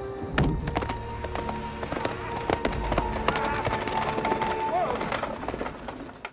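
Horse hooves clip-clopping as a horse-drawn carriage moves, under film score music with a long held note.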